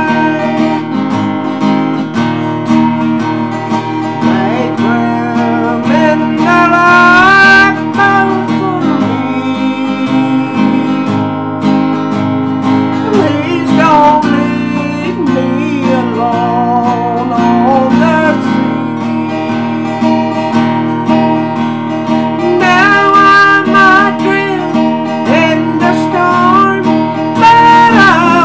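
Acoustic guitar strummed steadily, with a voice singing a melody line over it.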